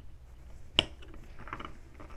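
A sharp click of small plastic LEGO pieces being snapped onto a spinner about a second in, with faint handling of the plastic parts.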